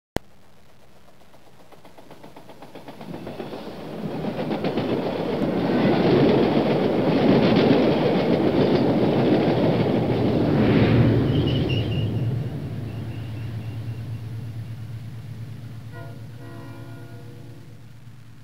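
A train passing by: the running noise swells, is loudest in the middle, then fades away, with a short horn note near the end.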